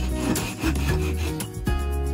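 A small hand blade rasping across a thin wooden dowel held in a vise, cutting a short piece off; the scraping lasts about a second and a half and stops before the end. Acoustic guitar music plays underneath.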